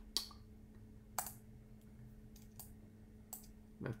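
About five isolated clicks of a computer keyboard, spaced irregularly, over a faint steady electrical hum.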